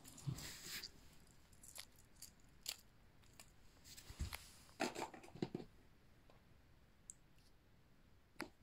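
Faint handling noises: scattered light clicks and rustles, with a short cluster of louder knocks a little under five seconds in.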